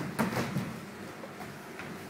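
Karate students striking on a count: cotton gis snapping and bare feet landing on a wooden floor in a quick burst near the start, loudest about a quarter second in. It settles into low room noise with a few soft foot sounds.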